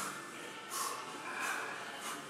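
A weightlifter's sharp, forceful breaths, about three in two seconds, as he braces under a heavily loaded barbell for back squats.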